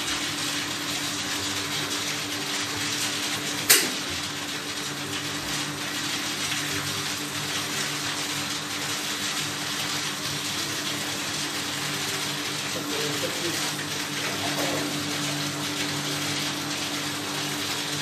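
Whirlpool bathtub with its jets running: a steady rush of churning water over a low, even hum from the jet pump. One sharp click about four seconds in.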